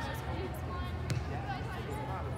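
A soccer ball kicked once, a single sharp thud about a second in, amid distant players' and spectators' voices calling over a steady low hum.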